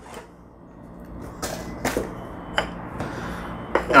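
A few light clicks and knocks of hands and ingredients against a stone mortar on a wooden table, over a soft rustle, as garlic and Thai chili are put in for a sauce.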